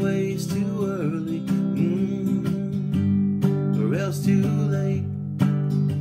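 Strummed acoustic guitar accompanying a male singer, whose voice slides and wavers through held notes between lyric lines.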